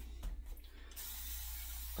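Hand-held spray bottle misting the face: a few faint clicks, then a steady spray hiss from about a second in.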